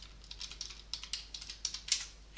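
Typing on a computer keyboard: irregular key clicks, coming faster in the second second.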